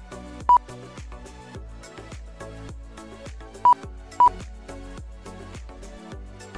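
Background music with a steady beat, cut through by three short, loud single-pitched beeps from the race's lap-timing system as cars cross the timing line: one about half a second in, then two close together a little past the middle.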